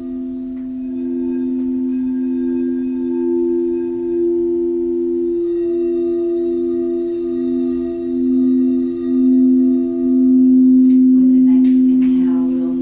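Frosted quartz crystal singing bowl sung by circling a mallet around its rim: a sustained hum of two steady low tones. In the second half the lower tone wavers in slow pulses, about one a second, and the hum swells a little near the end.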